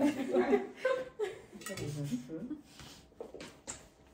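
Spoons clinking and scraping against plates of rice and mince, several short sharp clicks, with low voices and a little laughter.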